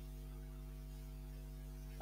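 Steady low electrical mains hum with its buzzy overtones in the recording.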